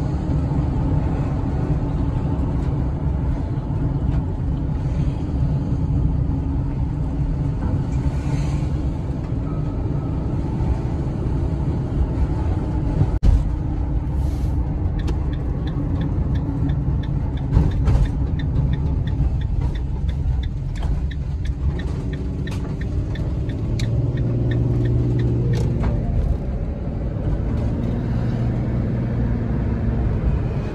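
Cabin noise of a delivery van being driven: steady engine and road rumble throughout. A couple of sharp knocks come in the middle, and a run of regular quick ticks lasts about ten seconds through the second half.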